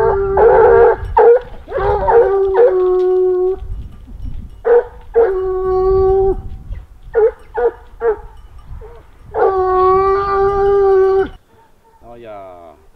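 Grand Bleu de Gascogne scent hounds baying on a hare's line. Drawn-out howls are broken by short barks, and the longest howl, about two seconds, comes near the end.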